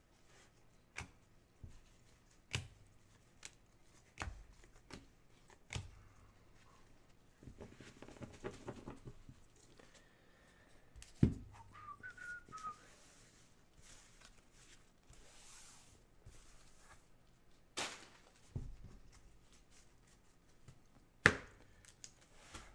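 Quiet handling of trading cards by gloved hands: scattered light taps and clicks as cards are shuffled and set down, the sharpest about halfway through and just before the end. A few faint whistled notes come just after the middle.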